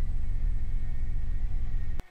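Steady low rumble of background noise with a faint thin high hum, even in level, with no distinct drilling or tool sound.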